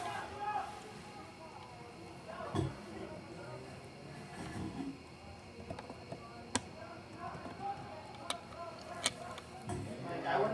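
Faint, distant shouts and chatter of players and spectators at a soccer match, with a few sharp clicks, mostly in the second half.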